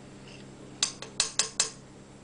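Metal cutlery clinking and scraping against a glass bowl as it digs into a soft microwaved chocolate cake: about four quick clinks in the second half.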